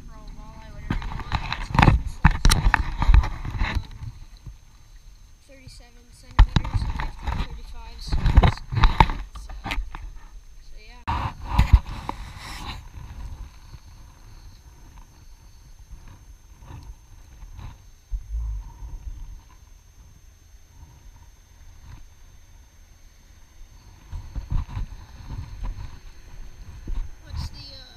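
Bursts of knocking and rustling from handling gear and a caught fish in a small boat: three loud spells in the first half, then quieter with scattered light clicks and bumps.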